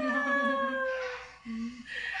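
Baby's long, high-pitched squealing vocalisation that slowly falls in pitch over about a second, followed by a short, lower hum about one and a half seconds in.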